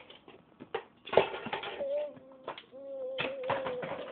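Toddler making soft, wavering cooing sounds twice, with a few sharp taps and knocks as small hands handle a large inflated ball.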